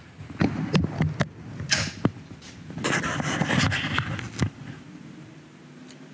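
A series of sharp clicks of a front-panel toggle switch and its flip-up red safety cover as a homemade Lichtenberg machine built around a microwave oven transformer is switched on, with some rustling handling noise. Near the end a faint steady hum starts from the powered-up box.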